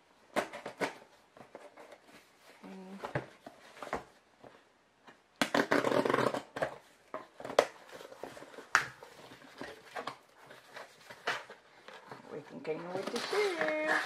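Cardboard shipping box being opened by hand: scattered clicks and rustles of cardboard flaps and packing, with a dense rasping burst lasting about a second near the middle.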